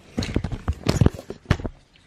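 A run of irregular clicks and knocks from a metal spoon working a small plastic yogurt pot over a plastic cup on a wooden table, the loudest knocks about a second and a second and a half in.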